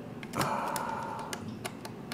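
Small plastic clicks and taps as a microSD card is pushed into the card slot of an Android TV box, with several sharp ticks spread over two seconds.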